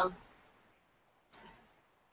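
Near silence after a trailing spoken "um", broken by a single short, sharp click about a second and a third in.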